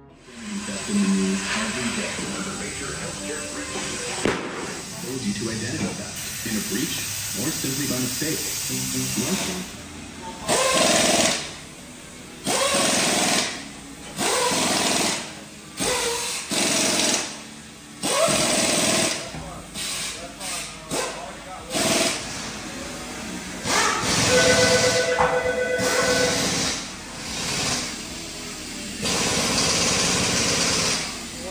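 Cordless impact wrench run in a series of short bursts, about a second each, mostly in the second half, driving lug nuts on the truck's wheel, over background music.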